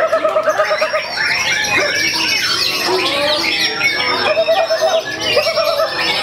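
Several caged white-rumped shamas (murai batu) singing at once in competition: a dense, loud tangle of overlapping whistles, quick chirps and trills, with a fast repeated low trill at the start and again near the end.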